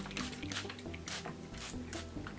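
Soft background music, with a few faint squishing strokes from fingers working through hair soaked with an apple cider vinegar spray.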